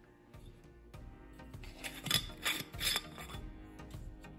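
Soft background music, with a few short rasping scrapes about two to three seconds in from a glass Ball mason jar being handled and moved.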